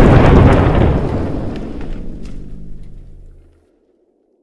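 A loud rumbling sound effect, dubbed in rather than made by the toy, that fades away over about three and a half seconds and stops.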